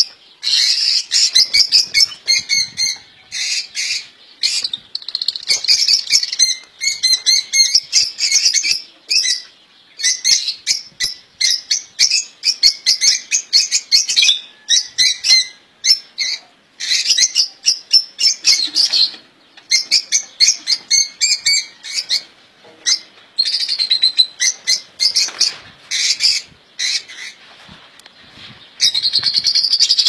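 Caged songbirds singing and chirping: loud, high twittering song in phrases of a second or two with short pauses between them.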